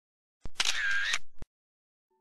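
A short editing sound effect for an on-screen card transition: a click, about a second of camera-like mechanical whirring with a high tone that dips and rises, and a closing click, much like a camera shutter with film wind.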